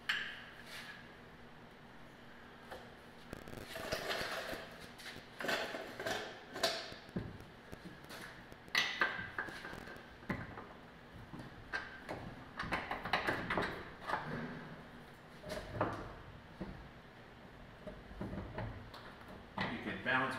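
Scattered metal clanks, knocks and clicks, a few with a short ring, from handling a heavy rear leaf spring and its mounting hardware under a car on a lift.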